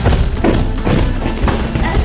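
Voices over background music, with a run of thumps about four a second.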